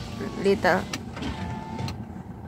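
A car's electric window motor runs for about half a second near the end with a steady whine, over the low hum of the car interior, with a short voice exclamation about half a second in.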